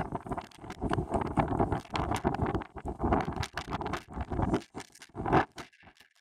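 Irregular rustling and scraping noise close to the microphone, rising and falling in uneven bursts, with one louder burst about five seconds in.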